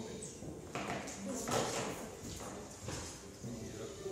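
A few light knocks and rustles of containers being handled on a table, about one a second, over faint murmuring voices.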